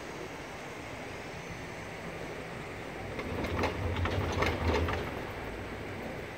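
Doppelmayr cabriolet lift running, with steady rushing noise, then about three seconds in a louder rapid clatter and low hum for about two seconds as the haul rope and cabin grips roll over a tower's sheave wheels.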